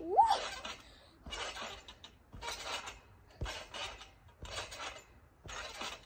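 A girl's rising "Woo!" as she bounces on a trampoline, then the trampoline's metal springs clinking and creaking with each landing, about once a second, with a dull thud from the mat on one bounce.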